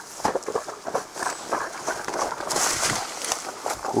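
Footsteps of a person walking quickly along a forest trail, with leaves and plant stems rustling and brushing as he pushes through the undergrowth.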